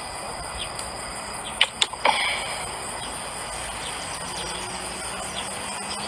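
Steady outdoor ambience with an even, high-pitched drone of insects. A few sharp clicks and a short chirp come about two seconds in.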